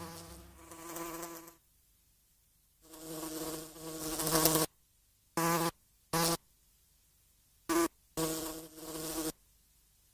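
A fly buzzing in stops and starts: two longer buzzes, the second growing louder, then four short buzzes of a fraction of a second each.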